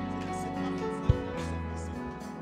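Soft live keyboard music: sustained chords over a held low bass note, with one short low thump about a second in.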